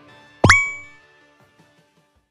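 A single bright ding sound effect about half a second in: a quick upward swoop into a ringing chime that fades within about half a second, over faint background music that tails off.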